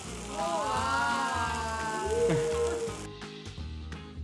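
Background music with a steady beat, over which a dosa sizzles in a hot nonstick frying pan. The sizzle drops away about three seconds in.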